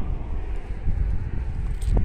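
Wind buffeting the microphone as a fluctuating low rumble, over faint outdoor street ambience.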